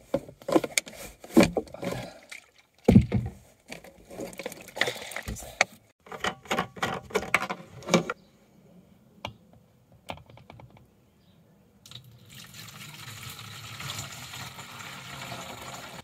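Plastic containers and packaging being rummaged and knocked about under a wooden bench, with a run of sharp knocks and rustles. About twelve seconds in, a steady stream of water starts running from the tap of a plastic water container into an enamel mug, lasting about four seconds.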